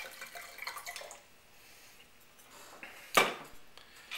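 Red wine pouring from a glass bottle into a wine glass for about the first second, fading out, then a single sharp knock about three seconds in as the bottle is set down on the table.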